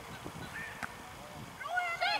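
Quiet outdoor ambience broken by short, high-pitched children's shouts, faint at first and louder near the end.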